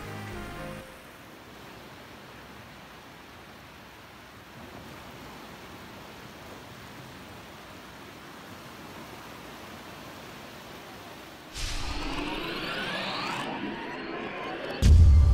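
Music fades out in the first second, leaving a steady hiss of shallow surf washing up a flat sandy beach. Near the end a much louder sweeping sound effect with falling tones cuts in.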